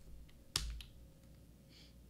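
A single sharp click about half a second in, with a few faint ticks around it: a computer key being pressed to step a trading chart back.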